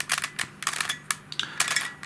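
The plastic pieces of a Helicopter Cube twisty puzzle clicking and clacking as its edges are turned by hand, in a rapid run of sharp clicks.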